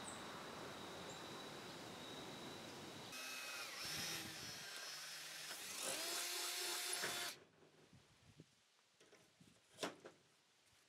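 Ridgid cordless drill running in spurts as it bores through the thin metal frame of a glazed lid, its whine changing pitch, then stopping suddenly about seven seconds in. A single sharp click comes near the end.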